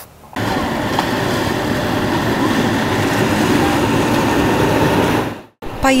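Steady engine rumble and rushing noise of a passenger motor ship, with faint voices mixed in; it cuts off suddenly near the end.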